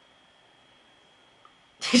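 Quiet room tone with a faint steady high-pitched tone, then near the end a man bursts out laughing, a sudden explosive outburst of breath and voice.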